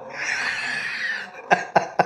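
A man laughing: a long breathy wheeze, then a quick run of short, sharp laugh bursts near the end.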